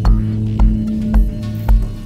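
Chill electronic music with a steady kick drum, about two beats a second, over a held bass note.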